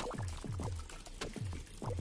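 Water from a small tabletop cement fountain trickling from an upper bowl into the basin below, with irregular plops about three or four a second.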